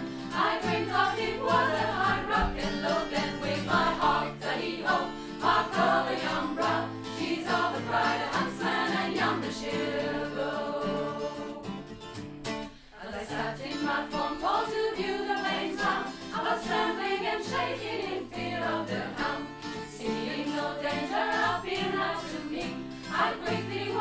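A women's choir singing a folk song in harmony, with acoustic guitar accompaniment; the singing breaks off briefly about halfway through.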